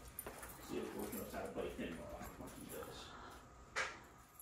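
A dog whining softly in short, wavering sounds, then a single sharp click near the end.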